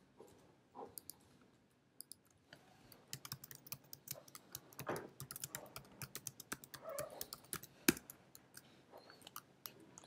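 Typing on a computer keyboard: a few scattered key clicks, then a quick, dense run of keystrokes from about two and a half seconds in, with one sharper click near the end.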